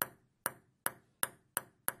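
A run of short, bright pings, six strikes that each ring briefly and come faster and faster, like a percussive sound effect.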